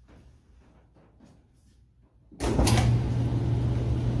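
A clothes dryer starting up on its no-heat fluff setting: after a couple of quiet seconds it comes on suddenly, and its motor and blower run steadily with a low hum.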